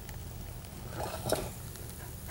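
A few faint soft taps and handling noises as a board is laid over a metal muffin tin of burning canned heat to smother the flames.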